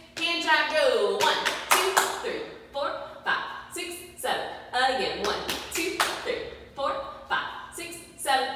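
Hand jive done fast: hands slapping and clapping, about two sharp strikes a second, with a woman's voice calling along over them.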